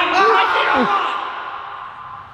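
Men's voices calling out, with one falling vocal sound about three-quarters of a second in, fading away over the second half.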